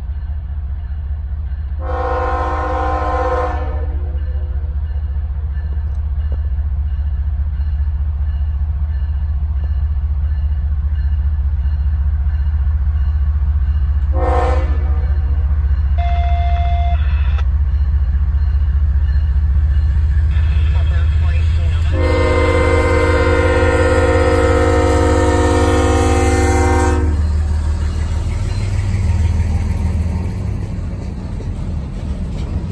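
Union Pacific GE ES44AH diesel locomotive approaching slowly with a steady low engine rumble, sounding its horn for a grade crossing. There is a blast of under two seconds, a short blast, and a long blast of about five seconds. Near the end the freight cars roll past.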